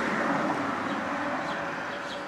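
Steady background noise of a passing vehicle that slowly fades away, with a faint low hum underneath.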